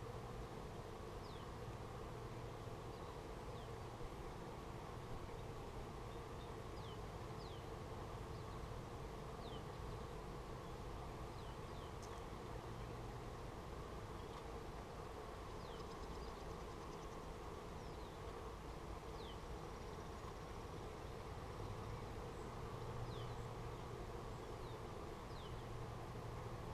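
Steady buzzing hum of many honey bees flying around an active hive, with a few short, high chirps that fall in pitch scattered through it.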